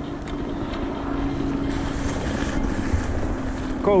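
Wind buffeting an action camera's microphone: a steady low rumble with a faint constant hum, and a brighter hiss for about a second midway.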